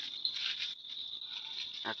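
A steady high chirring of night insects, with a faint crackle of dry leaves being crushed and rubbed between the hands, mostly in the first part.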